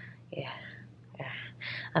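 A woman's quiet breathy sounds between sentences: a few soft exhalations and whispered, unvoiced syllables, with a faint low steady hum underneath.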